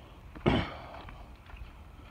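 A man's single short, breathy voiced exhale about half a second in, sharp at the start and falling in pitch. Under it are faint footfalls on a leaf-littered dirt trail.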